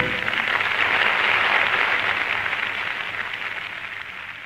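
Audience applauding just as the orchestra's closing music stops, the applause fading away steadily. It sounds thin and muffled, heard off an old off-air radio recording.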